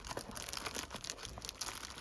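Faint crinkling of clear plastic wrap and scuffing of a cardboard box as hands work a wrapped item out of it, in many small crackles.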